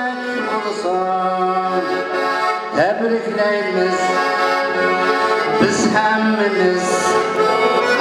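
Button accordion playing a traditional tune in sustained notes, with a man's voice singing along.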